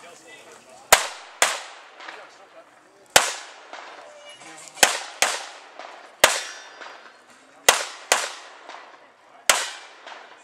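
Pistol shots fired during a practical shooting stage, about nine in all, several as quick pairs about half a second apart and others singly, each trailing off in a short echo.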